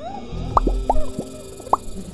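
Electronic music with held synth tones, over which come about five short rising blips, like drops of water plopping.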